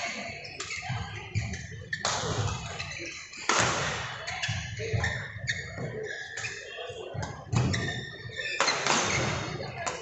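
Badminton rally: a few sharp racket strikes on the shuttlecock, a second or more apart, over background chatter in a large hall.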